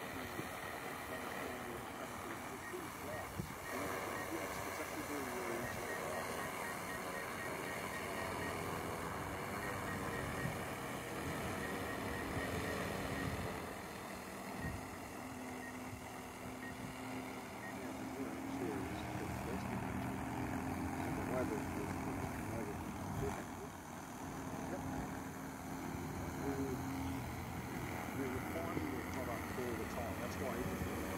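DJI Matrice 300 quadcopter's propellers buzzing as it flies and hovers low, the pitch of the hum shifting as it manoeuvres.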